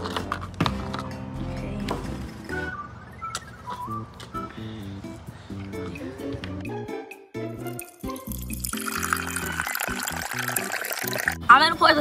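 Background music throughout. About nine seconds in, a few seconds of liquid pouring that stops suddenly: vinegar being poured from a plastic bottle for egg dye.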